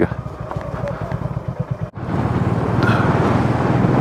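Motorcycle engine idling with an even beat, then pulling away about two seconds in and running louder and steadier as the bike picks up speed.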